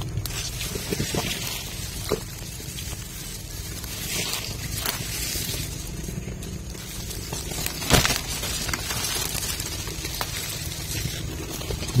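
Footsteps and rustling in dry leaf litter and undergrowth as someone moves on foot across the forest floor, with one louder crack about eight seconds in.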